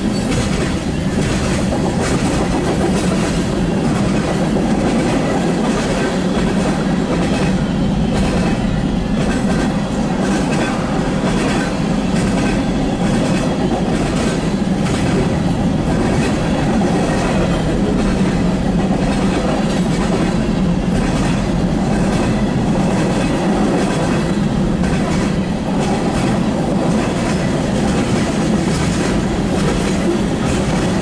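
Freight cars of a manifest train rolling steadily past at a grade crossing, their steel wheels clicking again and again over the rail joints.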